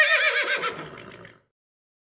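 A horse whinnying: one call with a quavering pitch that sinks and fades out about a second and a half in.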